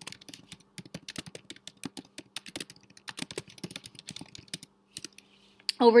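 Typing on a computer keyboard: a quick run of keystrokes that lasts about four and a half seconds, then a few last taps before it stops, with a faint steady hum underneath.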